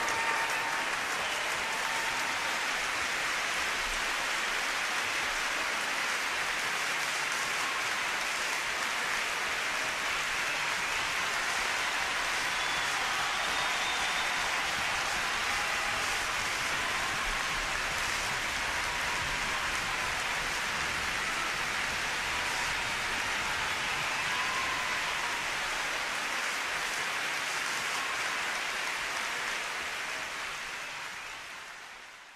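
Large concert-hall audience applauding steadily in a dense wash of clapping that fades out near the end.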